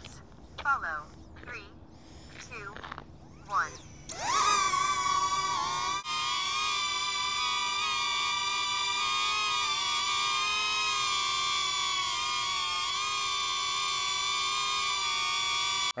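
DJI Neo mini drone's propellers spinning up with a rising whine about four seconds in, then hovering with a steady whine of several high tones. Measured at about 83 dB a foot away.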